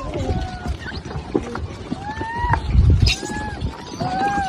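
Macaque monkeys giving a few short, high-pitched squealing calls as they crowd and scramble over food. About three seconds in there is a louder low rumble and a sharp click.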